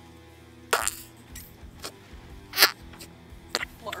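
Flarp noise putty squelched by a finger pressed into its tub, giving a few short wet squelches; the loudest comes a little past halfway, and two quicker ones follow near the end. Quiet background music runs underneath.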